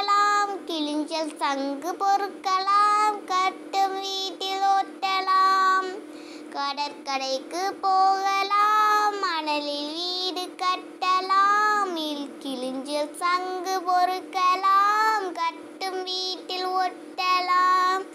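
A child's voice singing a Tamil children's rhyme in drawn-out, sung phrases with short pauses between lines.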